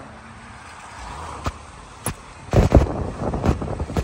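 Traffic on a wet city street heard from a moving vehicle: a steady road-noise bed, a couple of sharp clicks, and a loud rush of noise in the second half as a motorcycle comes up close alongside.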